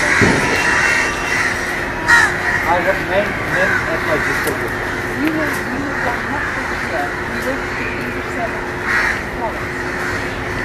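Crows cawing repeatedly over a steady background of outdoor noise.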